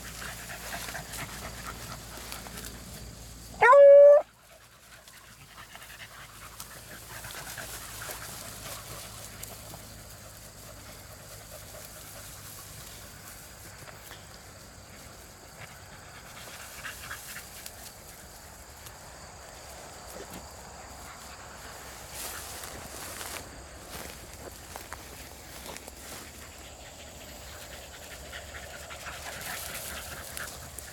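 Beagles working scent: one short, loud bay about four seconds in. Otherwise faint panting and rustling as the hounds push through the weeds.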